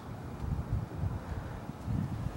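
Wind buffeting the microphone: an uneven low rumble with nothing else distinct.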